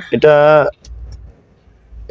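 A man's voice for about half a second, then a short low rumble lasting about half a second, then near quiet.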